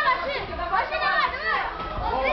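Spectators, many of them children, shouting and cheering with several high voices overlapping.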